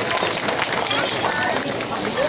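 Crowd of spectators chattering, many voices overlapping with no single voice standing out, with scattered faint clicks or claps.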